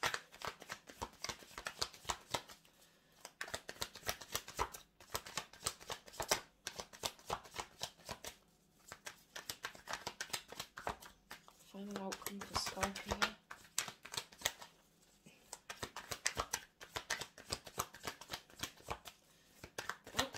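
Tarot cards being shuffled by hand: a long run of rapid, crisp card flicks, with a few short pauses.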